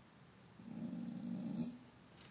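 A dog growling low once, for about a second in the middle.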